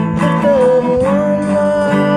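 A band's song with guitar accompaniment. About half a second in, a singer comes in on a new line and holds a long, slightly wavering note.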